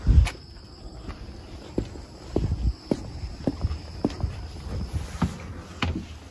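Footsteps of a person walking across the floor inside a motorhome coach: a thump at the start, then soft steps about every half second.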